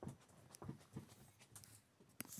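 Faint, soft knocks and scuffs, four or so in two seconds, from a juvenile barn owl shifting its feet and body on the floor of a wooden nest box.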